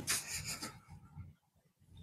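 A faint, brief rustling in the first moment, fading out, then near silence.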